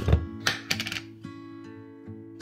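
A few sharp clicks and knocks in the first second from a plastic tub of vitamin C powder being handled, over background acoustic guitar music with sustained notes.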